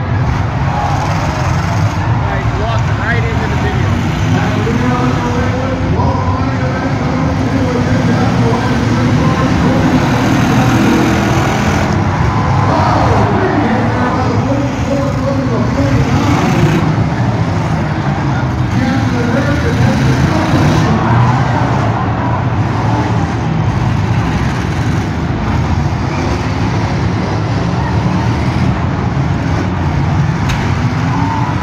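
Many demolition derby cars running and revving at once in the arena, with voices from the grandstand crowd mixed in throughout.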